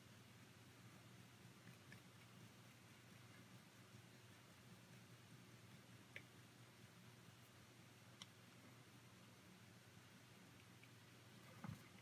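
Near silence: room tone with a faint low hum and a few very faint ticks.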